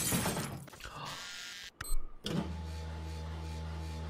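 A brief sharp sound effect about two seconds in, then a steady low electric hum from a cartoon vending machine.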